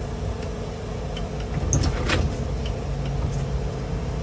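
Shuttle bus engine idling with a steady hum. About two seconds in, the passenger entrance doors unlatch and swing open with a few clicks and a knock, followed by about a second of low mechanical hum.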